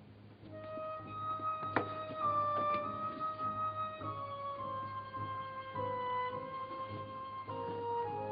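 Concert flute playing a slow solo line of long held notes that steps downward in pitch. A single sharp click sounds about two seconds in.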